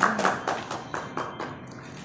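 A few people clapping by hand, the claps thinning out and dying away about a second and a half in.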